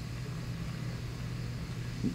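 Background hum of the recording: a steady low hum with a faint even hiss, no other event.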